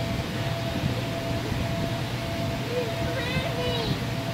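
Steady hum and rushing air of an inflatable bounce house's blower, with a thin steady whine over it. Children's voices call out high in the background during the last second or so.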